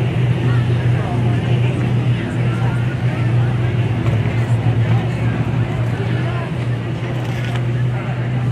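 A car engine running at a steady idle, a low even hum, with indistinct voices mixed in.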